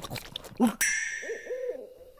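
Cartoon sparkle sound effect: a bright, chime-like ting about a second in, ringing out and fading over about a second, as a glint flashes on the character's eye. Under it, short low hoot-like calls.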